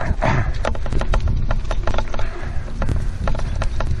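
Running footfalls on grass in a quick, steady rhythm, with wind buffeting the helmet-mounted microphone.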